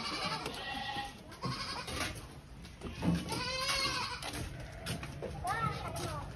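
Sheep bleating several times.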